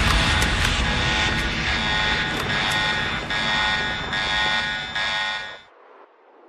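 A sustained electronic drone of many steady tones, the closing sound of an electronic soundtrack, stepping down in level and cutting off about five and a half seconds in, followed by a short faint fading tail.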